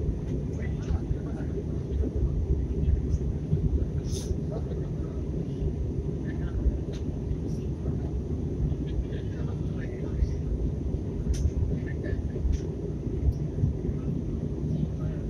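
Steady cabin noise of a jet airliner in flight on approach, the engine and airflow sound low and even. A few faint clicks and brief higher sounds sit over it, with a sharper click about four seconds in and another near eleven seconds.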